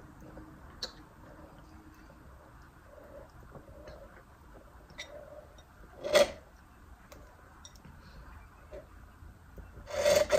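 Quiet sipping of a cold drink through a plastic straw, with faint clicks and one short, much louder sound about six seconds in.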